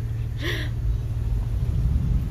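Steady low rumble outdoors, with a short breathy vocal sound about half a second in.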